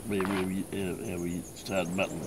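A man's voice, its words not made out, over a steady high chirring of insects.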